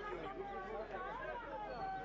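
Crowd of protesters, many voices talking and calling out over one another with no single voice standing out.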